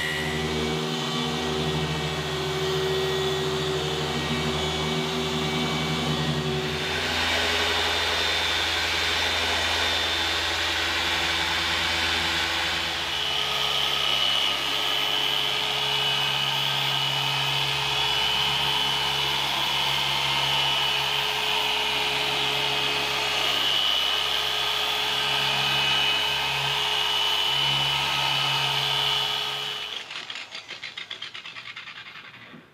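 Dual-action polisher running steadily with its pad on car paint during paint correction: a steady motor hum and whine whose pitch shifts about 7 seconds in and again about 13 seconds in, with a high whine standing out through the second half.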